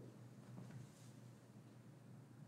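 Near silence: faint room tone with a low hum and a few faint ticks.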